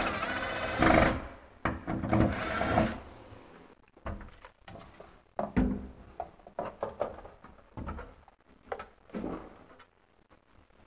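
Cordless impact driver with a Phillips bit running in two loud bursts over the first three seconds, backing out the corner screws of a lift's control panel. Scattered light knocks and clicks follow as the panel is pulled off the wall.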